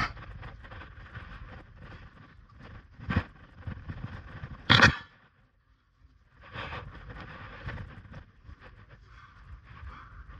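Close-up scrapes and rustles of a climber moving on rough rock, hands and clothing rubbing right by the camera's microphone, with two sharp knocks about three and five seconds in, the second the loudest. The sound then drops almost to nothing for about a second before the rustling resumes.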